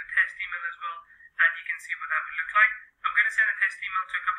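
Speech only: a person talking steadily, the voice thin and narrow like sound over a telephone, with two short pauses.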